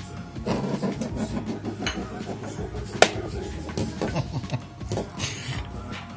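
A hen's egg spinning on a hard countertop, its shell giving a continuous fine rattle against the surface, with one sharp click about three seconds in.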